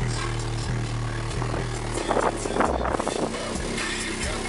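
A Digital Designs 9917 subwoofer in a ported trunk enclosure playing a hip-hop bass line loud, with deep held bass notes that change every second or so. About two seconds in there is a harsher, noisier stretch.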